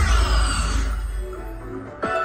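Fu Dao Le Riches slot machine's win sound effect: a sudden deep boom under a bright shimmering sparkle with a falling tone, fading away over about two seconds.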